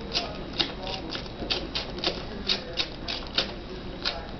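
Border collie puppies suckling at their mother: an irregular run of short clicking smacks, about three a second.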